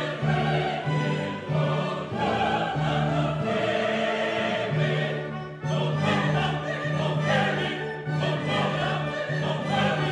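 A mixed choir of men and women singing a classical piece with a symphony orchestra, over a low bass note that is sounded again and again.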